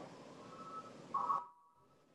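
A short two-tone electronic beep over a hiss of open-microphone noise on a video call line. Both cut off together about a second and a half in.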